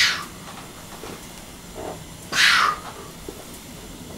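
Forceful hissing exhalations from a man lifting a barbell, one at the start and another about two and a half seconds in, with a short fainter breath just before the second.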